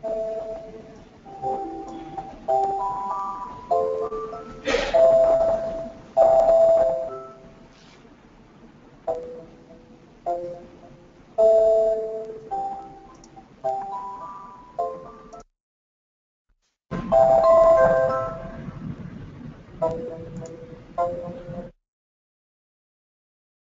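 A computer's audio-test tune: a melody of bell-like chime notes, each struck and ringing away, played in phrases. It cuts off suddenly about two-thirds of the way through, starts again a second and a half later, and stops just before the end.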